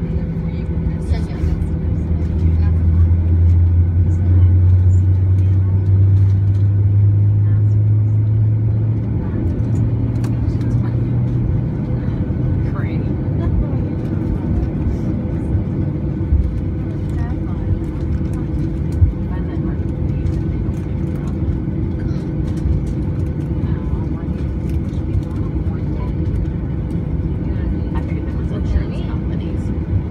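Cabin noise of a Boeing 737-900 taxiing: a steady rumble from its CFM56 turbofan engines at low taxi power. A strong low hum swells about two seconds in, rises slightly in pitch near ten seconds, then fades into the steady rumble.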